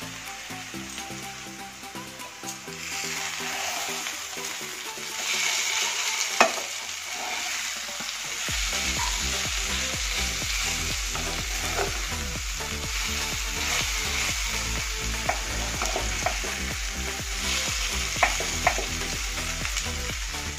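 Mushrooms in mustard paste sizzling as they fry in a nonstick pan, being browned until golden, with a spatula scraping and stirring them around. The sizzle swells in a few stretches, and there is one sharp tap about six seconds in.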